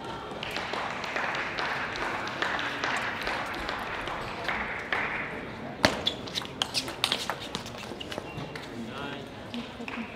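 A table-tennis ball bouncing on a hard surface about six seconds in, its bounces coming quicker and quicker as it settles, over a background of voices in the hall.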